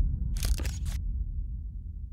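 Logo-sting sound effect: a deep bass boom slowly fading away, with a quick run of three or four sharp clicks about half a second in.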